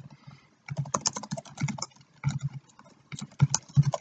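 Typing on a computer keyboard: irregular key clicks in quick runs, broken by short pauses.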